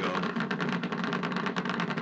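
Electromyography (EMG) monitor's loudspeaker giving a steady, dense crackle of rapid clicks: the injection needle is picking up the activity of the overactive neck muscle, the signal used to place a botulinum toxin injection.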